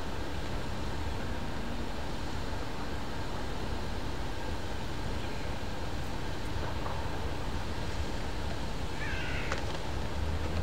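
Steady background noise with a low hum. Near the end comes one short cry that rises and falls in pitch, like an animal call.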